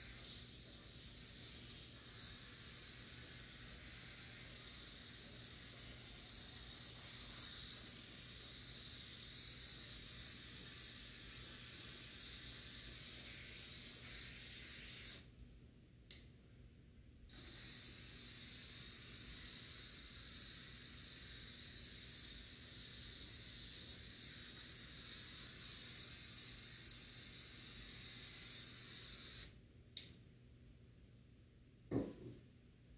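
Aerosol can of spray adhesive hissing in two long sprays, with a break of about two seconds near the middle.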